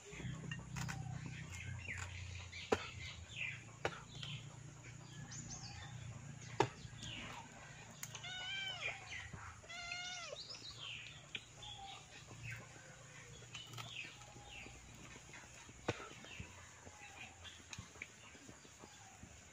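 Small birds chirping over and over, with a quick run of short rising-and-falling animal calls a little past the middle, and a few sharp clicks.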